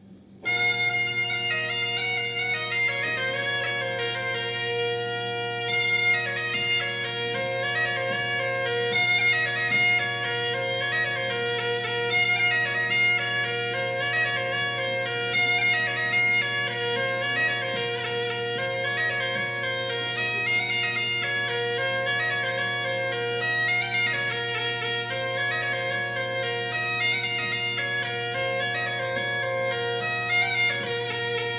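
A Trás-os-Montes bagpipe (gaita de foles transmontana) strikes up about half a second in and plays a lively melody over its steady drones.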